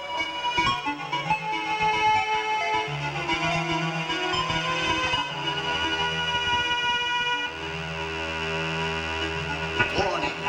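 Live band playing a song, with long held synthesizer or keyboard chords over a sustained bass line; the chord changes about seven and a half seconds in.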